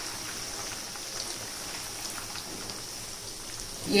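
Chicken pieces deep-frying in hot oil in a pan, a steady sizzle with fine crackling.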